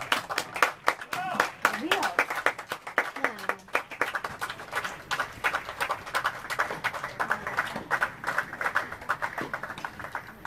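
A small crowd of spectators clapping, with voices calling out over the clapping in the first few seconds: applause as a tennis match ends.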